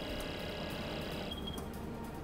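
Quiet background music of soft held tones over a low hum, the higher tones fading out a little past halfway.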